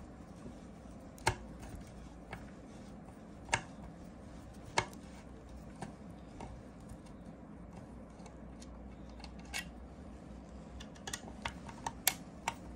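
Scattered sharp metal clicks and small taps as a screwdriver works the screws on a portable air compressor's cylinder head, a few seconds apart, the loudest three in the first five seconds, over a low steady room hum.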